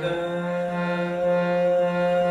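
Harmonium holding one long, steady note in raga Tilak Kamod, its reeds sounding a full, buzzy tone.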